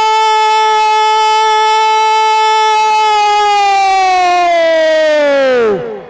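A man's voice holding one long, loud note for about five and a half seconds. It sinks steeply in pitch as it trails off near the end: a kabaddi commentator's drawn-out shout.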